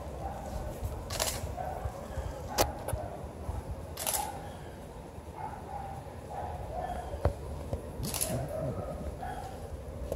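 Digital SLR camera shutter firing single shots: four crisp clicks, the first three about a second and a half apart, the last after a gap of about four seconds.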